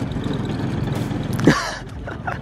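Walk-behind pitch mower's small engine running steadily across the grass. About one and a half seconds in, a short voice-like exclamation cuts across it.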